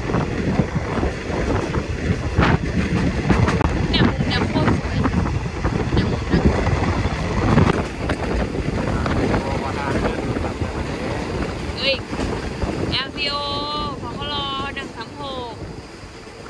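Wind rushing over the microphone with the rumble and clatter of a passenger train's wheels on the rails, heard from an open window of the moving coach.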